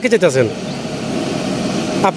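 A man's voice breaks off in the first half second, then a steady engine drone carries on.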